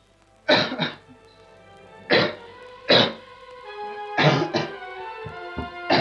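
A man coughing in about four fits, six harsh coughs in all, choking as if poisoned. Music of soft held notes comes in under the coughs about a second in.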